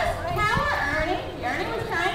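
Indistinct talking, children's voices among it, with no clear words.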